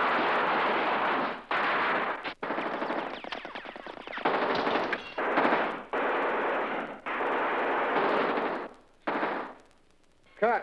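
Machine-gun fire in long bursts of rapid shots, about eight bursts separated by brief gaps, the longest lasting nearly two seconds.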